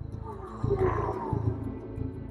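Background music with a steady low pulse, and over it a loud roar-like cry from about half a second in, lasting under a second, its pitch falling slightly.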